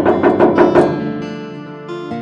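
Knuckles knocking rapidly on a door, a quick run of about seven knocks in the first second, over background acoustic guitar music.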